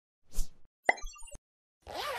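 Cartoon sound effects for an animated title graphic: a soft swish, then a sharp click followed by a quick run of short, high popping blips ending in another click, and a second swish starting near the end.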